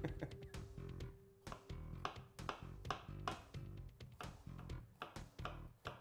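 Chef's knife slicing a green bell pepper on a plastic cutting board: a run of irregular blade taps, about two or three a second, over background music.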